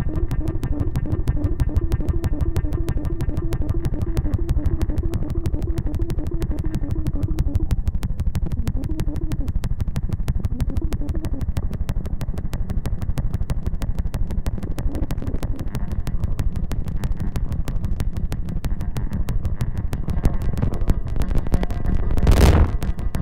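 No-input mixing board feedback noise: a dense, rapid stuttering pulse over a heavy low rumble. A wavering pitched tone rides on top and stops about eight seconds in, with two short tones returning shortly after.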